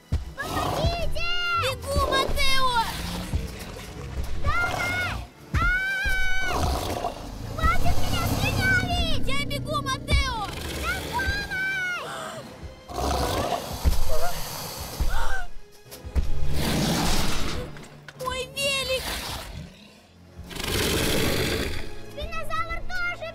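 Film soundtrack of music mixed with wordless cries and creature roars, rising and falling in pitch, with loud rushing surges in the last third.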